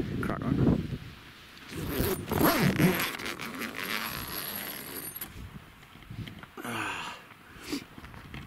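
Wind gusting across the microphone with an uneven rumble, with short snatches of voices talking near the start, a couple of seconds in, and again near the end.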